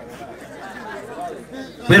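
Low background chatter of a gathered crowd during a pause in an amplified speech. A man's voice over the microphone starts again right at the end.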